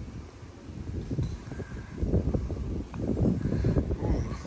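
Low, uneven wind rumble on the microphone, louder in the second half, with one faint click about a second in.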